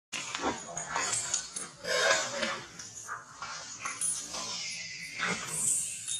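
Macaque calls: a string of short, irregular squeals and cries, loudest about two seconds in.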